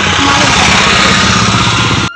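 Engine of a three-wheeler tempo (a Dehradun 'Vikram') running loud and steady as it passes close by in traffic.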